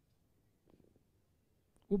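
Near silence: room tone, with a brief faint murmur under a second in. A man's voice starts near the end.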